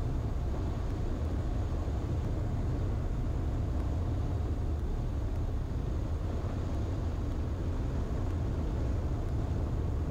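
Steady low rumble of wind rushing over an externally mounted microphone, mixed with the 1948 Ercoupe 415-E's Continental O-200 engine, as the small plane flares low over the runway to land.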